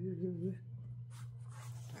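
A brief wavering hummed "mm" from the woman, then soft rustling and crinkling as cross-stitch fabric pieces are handled and laid out, over a steady low hum.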